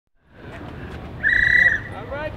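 A short, shrill, steady whistle-like tone, about half a second long, about a second and a quarter in, over low outdoor background noise.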